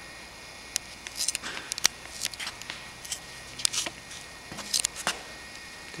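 Scattered light clicks and taps of handling noise, in a few short clusters, over a faint steady low hum.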